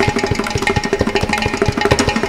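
Mridangam and ghatam playing a fast, dense rhythmic passage of strokes over a steady drone, in Carnatic percussion accompaniment.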